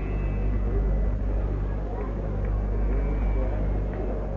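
Steady low electrical hum and rumble from an old live recording, with faint, indistinct voices murmuring over it.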